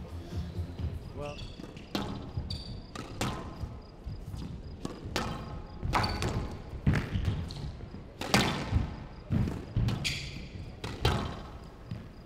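Squash rally: the ball cracks off rackets and smacks against the front wall and glass walls in an uneven string of sharp hits, with shoes squeaking on the wooden court floor.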